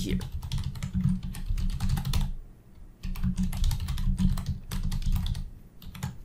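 Computer keyboard typing: a quick run of key clicks, a short pause a little over two seconds in, then a second run of clicks.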